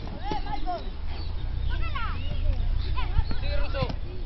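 Indistinct shouts and calls from voices around a youth football pitch, short and scattered, over a steady low rumble, with a few faint knocks near the end.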